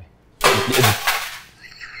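A man's sudden loud burst of laughter, breathy and falling in pitch, starting about half a second in and fading out within about a second.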